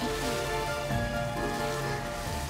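Background music score with sustained tones, laid over a steady hiss-like haze.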